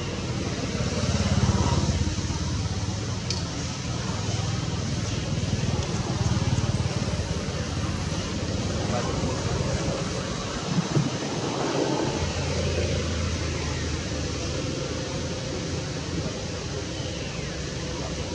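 Steady outdoor background noise with a low rumble throughout, and faint, indistinct voices in the middle.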